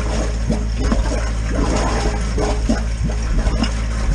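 Water splashing and gurgling in a brick drain inspection chamber while a hose works down into the drain. There is a steady low drone underneath.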